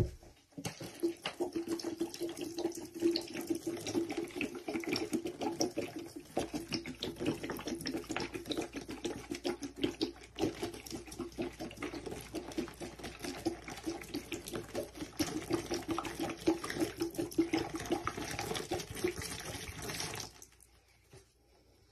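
Wet, squelching water sounds of laundry paste being worked in water, a dense run of small splashes and squishes starting about half a second in.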